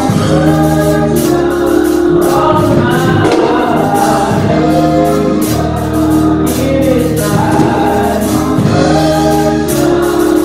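Gospel singing by a group of women on microphones, with live band accompaniment and a steady beat.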